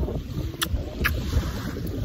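Wind buffeting the phone's microphone as an uneven low rumble, with two short clicks about half a second and a second in.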